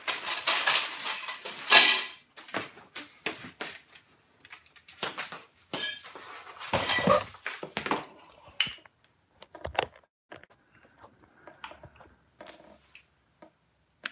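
Irregular light clinks, knocks and rustles of things being handled. They are thickest in the first two seconds and again midway, then thin out to a few faint taps.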